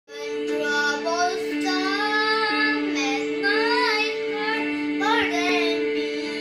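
A boy singing a solo over an accompaniment of steady, held low notes.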